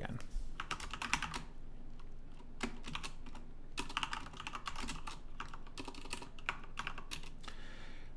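Typing on a computer keyboard: quick runs of key clicks broken by short pauses.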